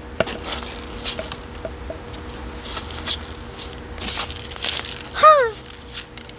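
A hand brush sweeping spilled potting soil and grit across a wooden shelf: a series of short scratchy strokes. Near the end, a short pitched sound that falls in pitch is the loudest moment.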